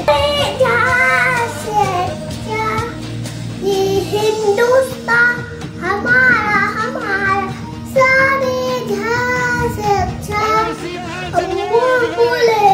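A young boy singing a song solo in a child's voice, with notes held and bending between short breaths.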